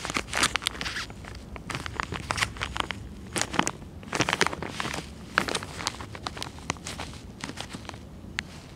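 Clear plastic parts bag crinkling and crackling as a gloved hand handles and presses on it, in irregular rustles, over a faint steady low hum.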